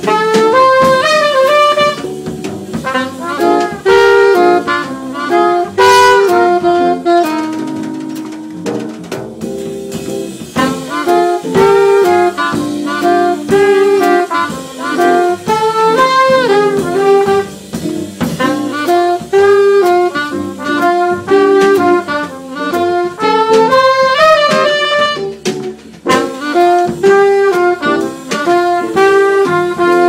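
Live small-band jazz: an alto saxophone plays a moving melodic line over drum kit and band accompaniment.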